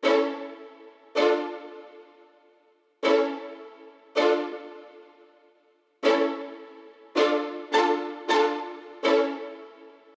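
Closing bars of a rap track's instrumental with no drums or vocals: a keyboard chord struck nine times, each left to ring and fade. The strikes come in spaced pairs at first, then closer together near the end.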